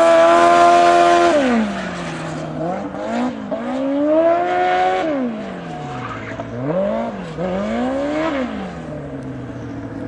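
Engine of a small winged open-wheel autocross car running through a cone course. It is held at high revs and loud for about the first second, then drops away. It then revs up and down several more times between corners, a little quieter.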